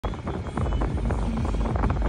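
Low, steady rumble inside a 2006 Chrysler 300C's cabin, with faint music playing over it.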